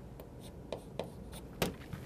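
Chalk tapping and scraping on a chalkboard in a few short strokes as a number is written. The loudest stroke comes about one and a half seconds in.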